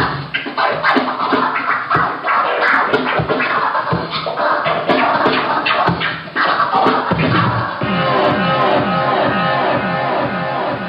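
Turntablist scratching vinyl records on turntables over a beat: quick back-and-forth scratches sliding up and down in pitch, cut sharply on and off by the mixer. Near the end the scratches fall into a fast, even run.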